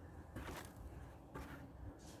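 Two faint scuffs and rustles of handling as an empty black plastic plant pot is picked up, about half a second and a second and a half in.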